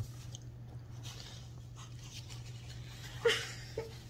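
Someone chewing a soft, juicy piece of tamarillo fruit, with faint wet mouth sounds over a steady low hum. A short, sharp, louder sound comes a little over three seconds in, followed by a smaller one about half a second later.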